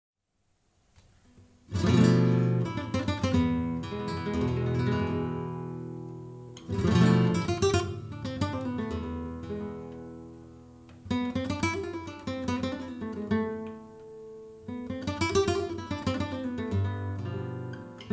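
Solo flamenco guitar, a 1998 Hermanos Conde 'Media Luna', playing the opening of a malagueña. It begins about two seconds in, with four phrases that each open on a loud strummed chord flourish and then ring and fade.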